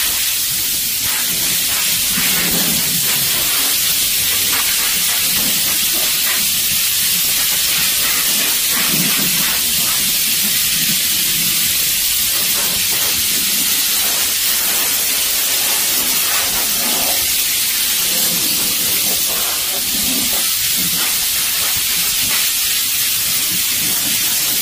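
Steam cleaner wand blasting steam: a steady, loud hiss that runs on without a break.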